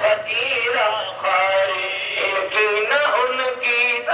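A man singing a devotional ghazal in long, ornamented melodic lines over musical accompaniment.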